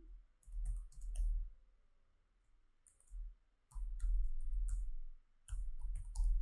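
Typing on a computer keyboard: runs of quick keystrokes with a soft low thud under each run, and a pause of about a second and a half in the middle.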